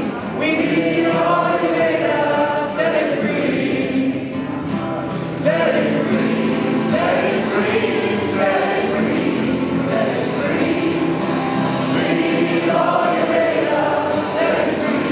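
Live song: men singing together, accompanied by an acoustic guitar and an electric guitar.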